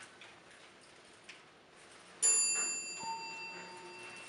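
A bell-like ring that starts suddenly about two seconds in and rings on, fading slowly, with a lower steady tone joining about a second later. Faint ticks before it.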